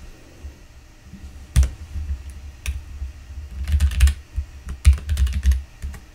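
Typing on a computer keyboard: irregular keystrokes in short runs. There is a sharp single keystroke about a second and a half in, and quicker flurries of keys in the second half.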